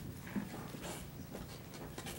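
Low room noise in a quiet meeting room, with a few faint knocks and rustles from people moving at the table.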